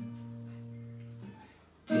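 A classical guitar chord strummed once, ringing and dying away over about a second, then a second strum near the end that leads into the next verse.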